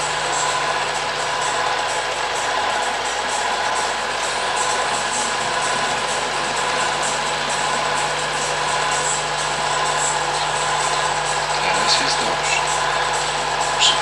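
Film projector running steadily, its motor and film mechanism making an even mechanical whirr with a steady hum.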